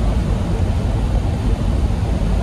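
Steady low rumble inside a semi truck's cab at highway speed, engine drone and road noise blended together.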